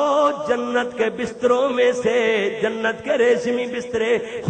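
A man's voice chanting a melodic recitation, holding long notes that waver in pitch.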